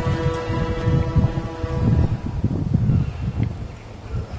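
Wind buffeting the microphone in uneven gusts, under a few long held notes of background music that end about halfway through.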